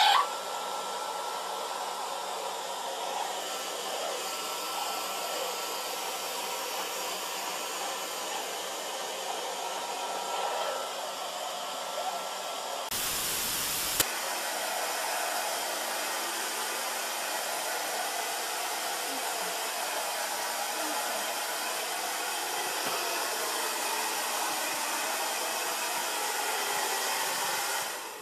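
A hair dryer blowing steadily. About halfway through, a second-long burst of loud TV-static hiss breaks in, and then the steady blowing carries on.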